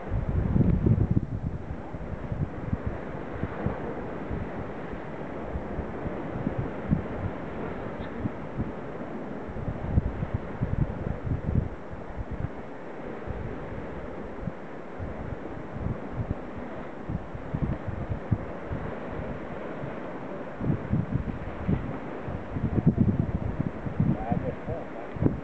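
Wind buffeting the microphone in uneven gusts, a low rush with stronger gusts about a second in and again near the end.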